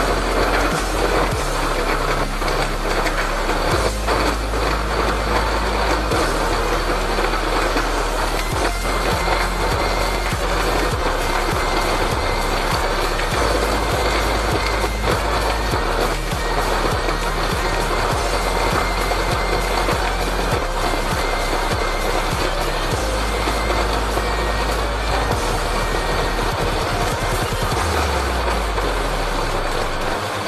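Electric countertop blender running steadily, crushing ice cubes and dates with milk into a smooth juice, with short knocking rattles mostly in the first half. Background music plays underneath.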